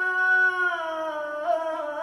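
A man singing solo in Middle Eastern style: one long held note that slides down about halfway through, then breaks into a wavering, ornamented line near the end.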